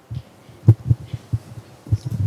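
A handful of dull low knocks, about five in two seconds with the loudest near the middle, as a handheld microphone is handled and bumped before someone speaks into it.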